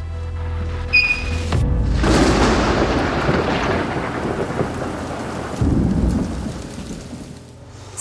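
Thunder and rain: a crash of thunder about two seconds in that slowly rolls away over steady rain, with a second low rumble of thunder near the end. At the start, the last tones of the music fade out.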